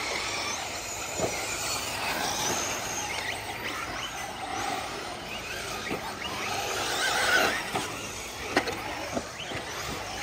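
Radio-controlled truggies racing on a dirt track: their motors whine, rising and falling in pitch as the cars accelerate and brake. A few sharp knocks land in the second half.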